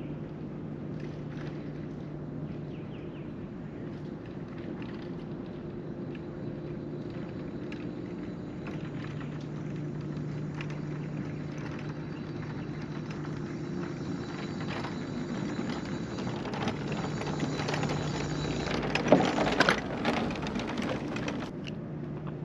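Electric mobility scooter's motor running with a steady low hum and whine, growing slowly louder as it comes closer over a wooden bridge, with light rattles from the boards. About nineteen seconds in the motor stops, with a few knocks.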